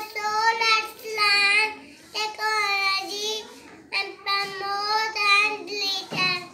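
A young girl's voice in a high, sing-song delivery, in drawn-out phrases with short pauses.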